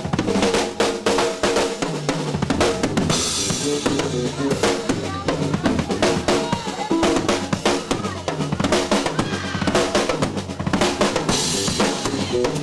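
Live blues-rock band playing: a drum kit drives with rapid snare and bass drum hits under sustained bass and electric guitar notes. Cymbal crashes wash over the band about three seconds in and again near the end.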